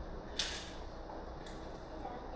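A jump rope slapping the concrete floor: one sharp slap about half a second in and a fainter one about a second later, over a steady low hum.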